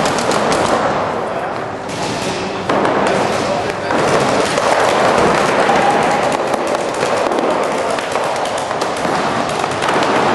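Paintball markers firing in quick runs of sharp pops, thickest in the first second, over indistinct shouting voices.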